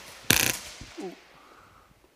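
Airsoft electric rifle (AEG) firing a short full-auto burst of rapid clicks about a third of a second in, lasting about a quarter second.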